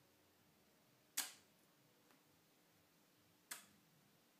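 Two sharp clacks, the first louder and the second about two seconds later: relays in a home-built relay computer's ALU switching as results are gated out to the data bus and the condition register is loaded.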